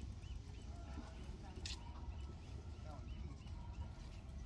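Open-air ambience: a steady low rumble with faint, indistinct voices in the background, and a quick run of short high chirps at the very start.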